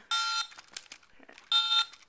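Baby Genius Swivel and Sound toy cell phone giving two identical short electronic beeps, just under a second and a half apart.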